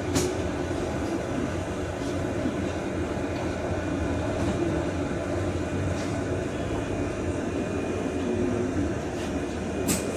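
MCV-bodied Volvo BZL battery-electric double-decker bus running, heard from the upper deck: a steady hum of the electric drive with a tone that drifts with speed, over road and body noise. A sharp click comes near the start and another near the end.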